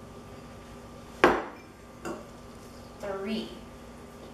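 A ceramic bowl knocks sharply against a stainless steel mixing bowl about a second in, with a brief ring, followed a second later by a fainter knock.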